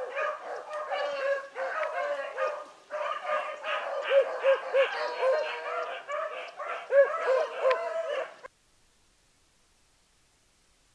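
Hunting hounds baying, many drawn-out arching calls in quick succession, as they run a rabbit's trail. The sound cuts off suddenly about eight and a half seconds in.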